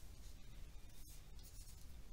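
Faint scratching and tapping of a stylus writing on a pen tablet, as short soft strokes over a low room hiss.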